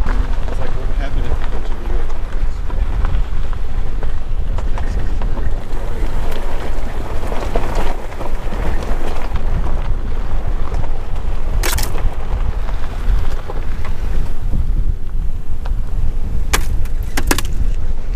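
Pickup truck driving on a rough dirt road: a steady low rumble of engine and tyres with wind noise, and a few sharp knocks in the second half.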